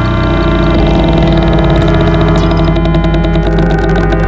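Experimental electronic synthesizer music: dense layers of sustained, buzzing pitched tones with a rapid pulsing above them, the texture shifting about a second in and again midway through.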